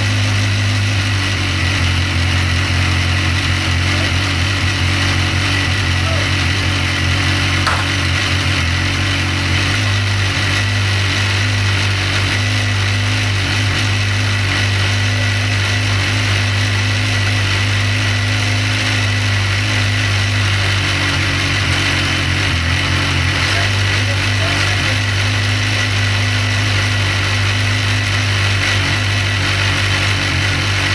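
BMW S1000R inline-four engine idling steadily, with slight shifts in its tone about 8 and 23 seconds in.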